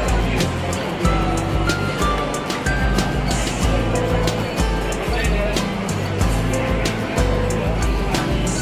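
Background music with a steady beat, heavy bass notes and a simple melody line.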